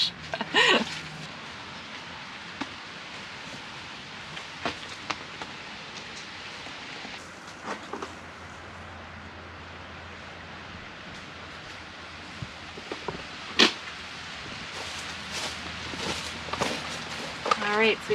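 A short laugh, then a steady background hiss broken by scattered light clicks and knocks, the sharpest about thirteen seconds in.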